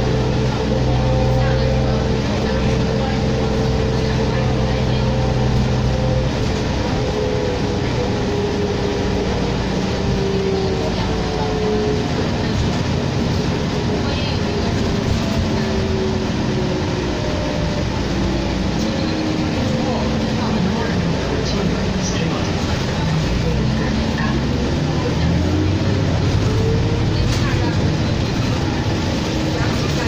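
Interior of a 2004 New Flyer D40LF diesel city bus underway: a steady engine drone for about the first six seconds, then an engine and drivetrain note that rises and falls several times with the bus's speed, over a constant road rumble.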